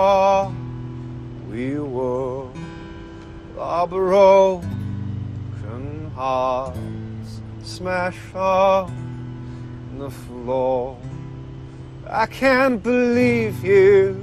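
Acoustic guitar strumming over held keyboard chords, with a male voice singing long wordless notes that waver and glide in pitch every couple of seconds.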